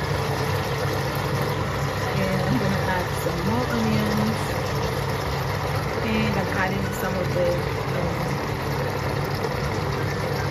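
Meat and onions sizzling steadily in hot oil in an open stovetop pressure cooker.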